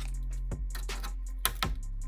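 Background music with a steady bass, and three light clicks of plastic and metal from the laptop's detached display hinge and lid being worked with a plastic pry tool, about half a second in and twice around a second and a half in.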